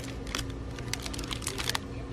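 Plastic-wrapped toy package being handled on a store pegboard hook: a quick, irregular string of crisp crinkles and clicks, over a faint steady hum.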